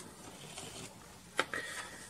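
Quiet room tone with a single light click about one and a half seconds in: handling noise as a USB cable is picked up and brought onto the table.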